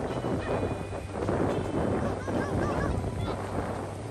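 Surf and wind rushing over the microphone on a beach, with a string of short bird calls about two seconds in.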